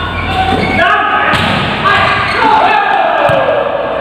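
Volleyball rally: a few sharp smacks of hands on the ball, under players' drawn-out shouts and calls, one a long falling call in the second half.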